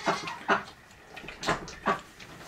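Goat kid sucking milk from a plastic bottle with a nipple: four short, sharp sucking noises about half a second to a second apart.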